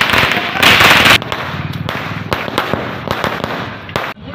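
A string of firecrackers going off in rapid succession, a dense run of sharp cracks, loudest about half a second to a second in and then crackling on more softly.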